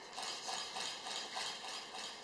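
Sony SLT-A55 camera shutter firing in continuous burst mode at its slower setting, a steady run of clicks about three a second. The camera has a fixed translucent mirror, so the shutter makes the clicks and there is no mirror flipping up and down.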